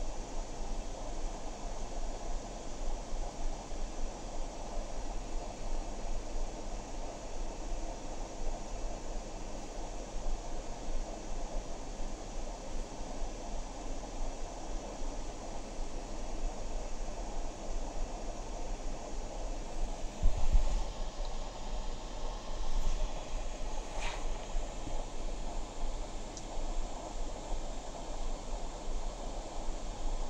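Steady background hiss with a constant low hum. A low bump comes about two-thirds of the way through, and a short click follows a few seconds later.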